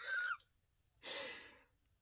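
A woman's short, high vocal squeak, then about a second in a long breathy sigh that fades away.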